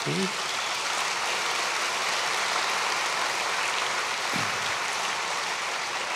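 Audience applause, a steady clapping that swells just after the start and holds evenly throughout.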